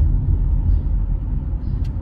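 Steady low road and engine rumble inside the cabin of a moving Volkswagen Vento, with one brief click near the end.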